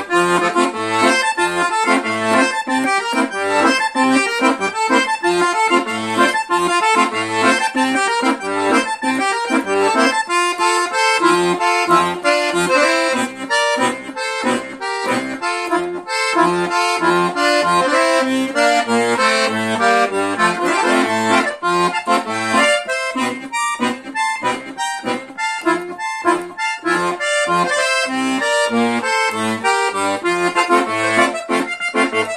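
Scandalli 120-bass piano accordion playing a tune: right-hand melody and chords over a steady rhythm of short left-hand bass notes.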